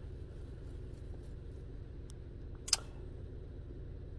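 2009 Chevrolet Malibu Hybrid's 2.4-litre four-cylinder engine idling steadily, heard from inside the car, running rather than shut down by its auto-stop system. A single short click sounds about two-thirds of the way through.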